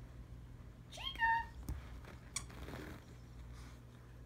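A dog's squeaky plush toy gives one short high squeak about a second in, rising and then holding. A couple of light clicks and a soft rustle follow as the dog works the toy on the carpet.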